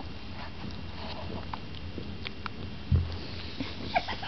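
Young kittens scrambling over each other and their mother: faint scuffling and a few small clicks, with one low thump about three seconds in.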